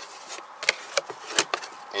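Cardboard shipping box being handled as its flaps are folded, giving a few sharp taps and light cardboard scraping.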